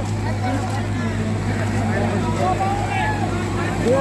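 Tractor diesel engine running steadily under heavy load, pulling a weighted disc harrow through wet mud, with onlookers' voices over it.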